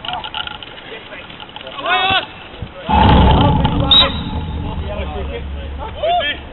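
Players shouting across an outdoor football pitch: a short call about two seconds in and another at the end. Between them, from about three seconds in, a sudden loud low rumble on the microphone, loudest for the first second and then easing off.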